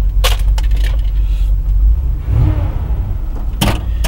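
Chevrolet big-block V8 in a 1971 Chevy pickup purring at idle with a steady low rumble, not yet warmed up. A few sharp clicks cut in early and again just before the end.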